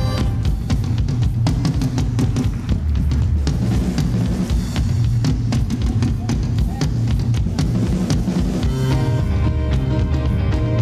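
Live stage band playing up-tempo music driven by a drum kit, with a steady run of drum hits over a heavy bass; held melody notes come back in about nine seconds in.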